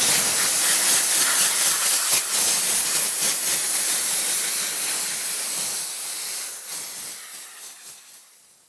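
Compressed-air blow gun hissing steadily as air is blown across freshly brushed, wet silicone rubber to pop bubbles on its surface. The hiss fades away over the last two seconds.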